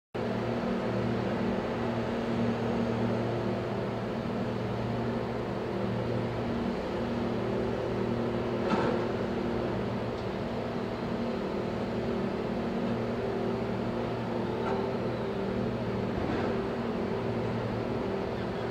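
A steady low mechanical hum made up of several constant tones, with a single faint click about halfway through.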